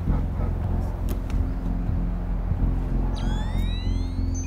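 A steady low droning rumble from the film's sound design. About three seconds in, several rising electronic sweeps join it.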